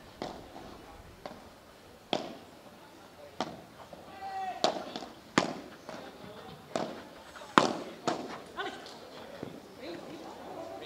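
Padel rally: a ball struck back and forth with solid padel rackets and bouncing on the court, a string of sharp pops roughly a second apart, the loudest about three-quarters of the way through.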